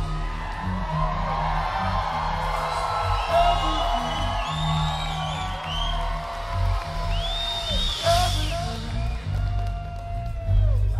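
Rock band playing live through a hall PA in an instrumental passage without vocals: bass and drums underneath, with held electric guitar notes that bend and slide in pitch. A few high whoops from the crowd come in over the music, the clearest one about eight seconds in.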